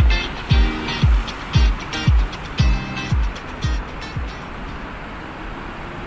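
Background music with a steady kick-drum beat, about two beats a second, fading out about four seconds in and leaving steady road traffic noise.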